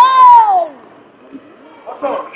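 One loud, drawn-out shout of encouragement from a sideline voice, falling in pitch over well under a second, then quieter sports-hall noise with a few faint knocks.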